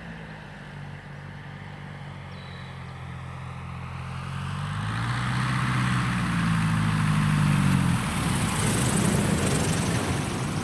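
Four-cylinder Continental Titan IO-370 engine and propeller of a STOL CH 750 Super Duty light aircraft on a low landing approach, its steady drone growing louder as it nears. About eight seconds in, as the plane touches down on the grass strip, the even engine note breaks off into a rougher, noisier sound.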